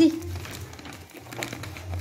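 Gift-wrapping paper crinkling and rustling as a dachshund pulls at a wrapped Christmas present with its mouth.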